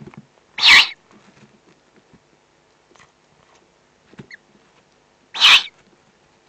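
Eurasian eagle-owl chicks giving their food-begging calls: two short, harsh, hiss-like rasps about five seconds apart, with faint rustling between.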